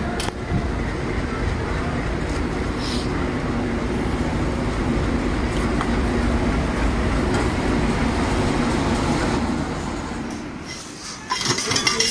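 A train passing along the station track: a steady rumble and rattle of wheels on rails that dies away about ten seconds in.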